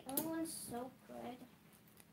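Quiet speech: a few short, faint spoken phrases, with no other sound standing out.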